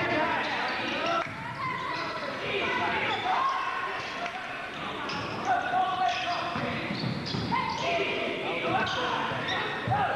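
Basketball being dribbled on a hardwood gym court, with players' shouts and spectators' voices in a large hall.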